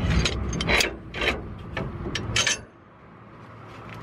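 Steel suspension bracket and clamp parts being handled and fitted against a leaf spring, clinking and scraping. A string of irregularly spaced clicks and scrapes stops about two and a half seconds in.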